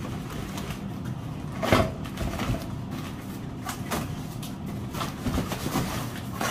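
Cardboard packaging being handled and pulled out of a box: scraping and rubbing with sudden knocks, the loudest about two seconds in, over a steady low hum.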